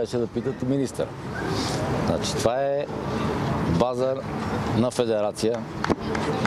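Mostly speech: a man talking in short phrases, over a steady low hum and outdoor background noise.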